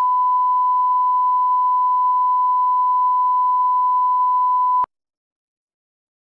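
Steady 1 kHz broadcast line-up tone, the reference tone that accompanies colour bars, held at one pitch and cutting off abruptly near the end.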